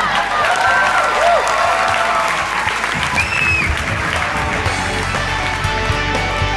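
Theatre audience applauding and cheering with whoops and a whistle. About halfway through, music comes in under the applause.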